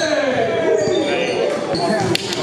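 Basketball game sounds on a gym floor: sneakers squeaking and the ball bouncing.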